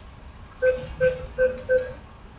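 ATM keypad beeping four times as its buttons are pressed: four short, identical beeps at an even pace, about a third of a second apart.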